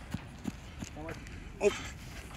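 A few light footfalls of a football player running on artificial turf during a defensive-back drill.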